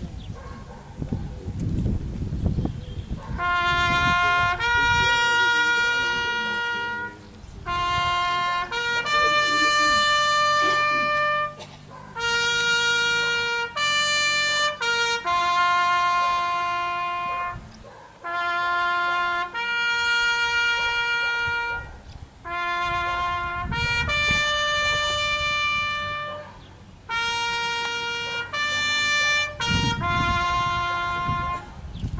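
Solo trumpet playing a slow ceremonial bugle-style call, one note at a time on the natural bugle notes, with long held notes in phrases separated by short pauses, starting a few seconds in.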